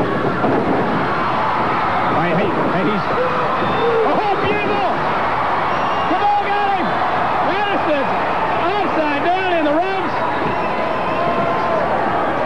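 People's voices, speaking or shouting, over steady arena crowd noise throughout.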